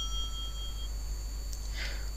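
The fading tail of a bell-like ringing tone, dying away about a second in, over a steady low electrical hum and faint hiss.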